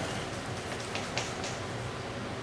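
Steady hiss of room noise with a few faint, light clicks about one and one and a half seconds in.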